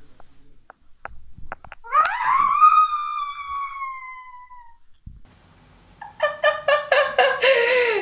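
A few faint knocks as a girl climbs over a window ledge, then a long, high-pitched scream from her that rises quickly and slides slowly down over about three seconds. From about six seconds in, a young woman laughing hard.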